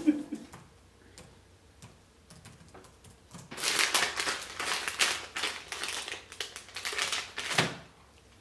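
Foil snack wrapper of a protein cookie being torn open and crinkled by hand: a run of sharp crackles starting about halfway through, lasting about four seconds and stopping abruptly.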